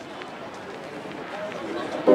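Outdoor street ambience: a steady background hiss with faint distant voices and scattered light ticks.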